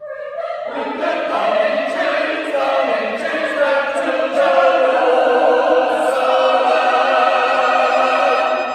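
Small men's choir singing. A few voices enter at once, the rest join under a second later, and the chord swells into sustained notes that ring in the church.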